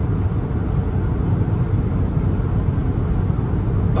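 Car driving at highway speed, heard from inside the cabin: steady, low road and tyre noise.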